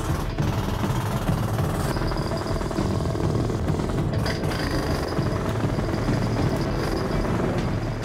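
Pneumatic jackhammer running steadily, its bit breaking up hard clay.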